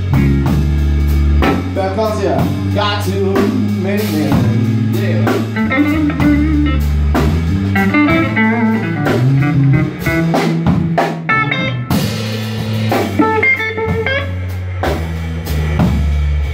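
Live blues band playing an instrumental passage: an electric guitar picks out lead lines over a drum kit and a steady low bass line.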